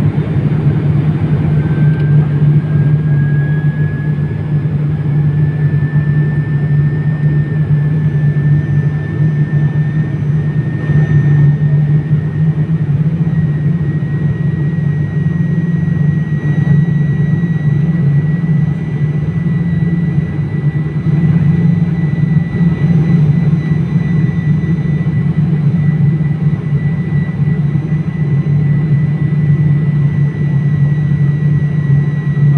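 Cabin noise of a turboprop airliner on descent for landing: a steady, loud, low propeller drone. A faint thin whine above it rises in pitch over the first several seconds and then holds steady.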